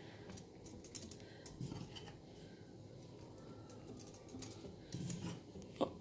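Faint, scattered clicks and light rustling as a flower bouquet is handled while it is given a little water.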